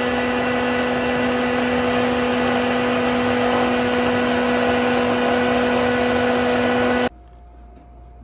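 Hand-held stick blender (mixer) running steadily while it purees cucumber with cooled tea, with a strong low motor hum. It switches off suddenly about seven seconds in.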